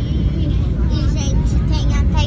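Airliner cabin noise in flight: a steady low engine and air rumble, with faint voices in the cabin.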